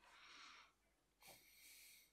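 Near silence, with two faint breaths through the nose, the second a little longer.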